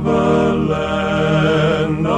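Male gospel quartet singing in close harmony, holding long chords that shift a couple of times.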